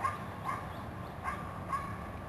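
Faint short whines from an animal, four brief high calls in about two seconds, over a low steady room hum.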